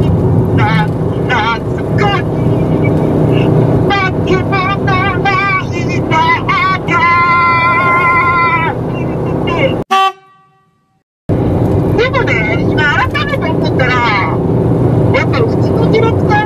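A man singing an improvised song solo, with a long held wavering note about seven seconds in, over steady vehicle and road noise. Around ten seconds in the sound cuts out to silence for a second or so, then the singing and road noise return.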